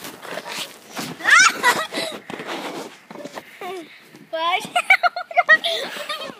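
Children laughing and squealing, with a high rising squeal about a second in and a run of laughter in the second half, over footsteps on grass and dry leaves.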